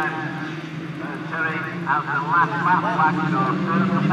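A pack of autograss junior specials racing, their engines revving with pitches rising and falling over a steady low drone.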